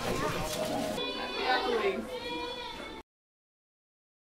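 Mixed voices of people talking, then a young child's high-pitched, drawn-out voice for about two seconds. The sound cuts off suddenly about three seconds in.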